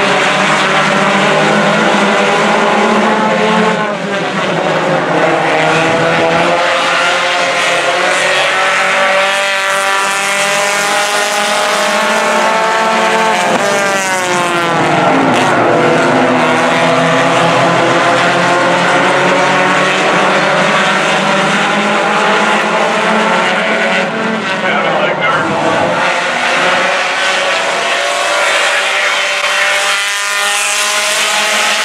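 A pack of pure stock race cars running hard together, many engine notes overlapping. Their pitch falls and then climbs again about halfway through as the cars lift and accelerate.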